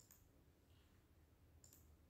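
Near silence: faint room tone with a few soft clicks.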